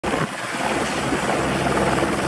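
Turbine helicopter running close by: a steady rush of rotor and engine noise over a low, even hum.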